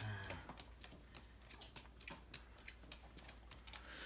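Playing cards being dealt one at a time onto a cardboard box lid: a quick, irregular run of light card snaps and taps, several a second.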